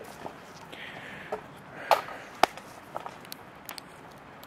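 Handling noise as a hand-held camera is picked up and turned: a brief rustle about a second in, then a few scattered sharp clicks and knocks, the sharpest about halfway through.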